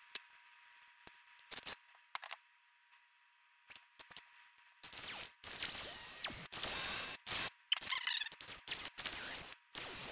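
Cordless drill with a half-inch spade bit boring lengthwise into a carrot, run in short bursts from about five seconds in, its motor pitch rising and falling as the trigger is eased on and off. Before that, a few light handling clicks.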